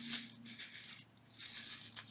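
Faint handling sounds of a sequin-filled paper-and-acetate shaker pocket: a soft rustle just after the start and another from about halfway on.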